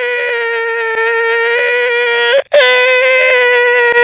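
A voice stretched out by editing into one loud, steady, high tone that holds for about two and a half seconds. It cuts out briefly, then starts again as a second held tone at the same pitch.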